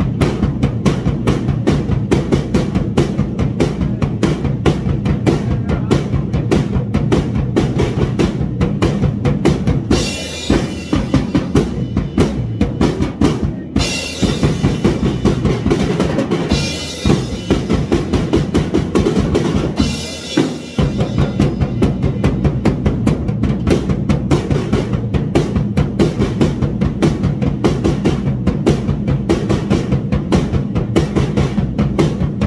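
Acoustic drum kit played freestyle: a fast, driving beat of kick drum and snare. From about a third of the way in comes a stretch of cymbal wash with the bass drum mostly dropping out, broken by short pauses, before the full beat returns.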